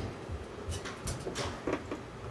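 Several short clicks and knocks over a steady low hum.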